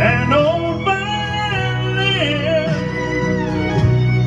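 Slow country ballad playing: a gliding melody line over a steady, sustained low backing.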